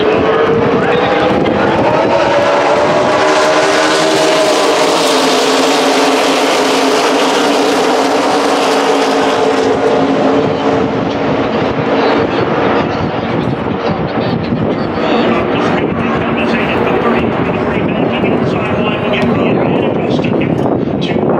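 A pack of NASCAR Xfinity Series stock cars' V8 engines running at racing speed. The pack's sound rises in pitch and then falls as it passes, loudest as the field goes by about 3 to 10 seconds in. After that a steadier engine noise carries on as the cars run on around the track.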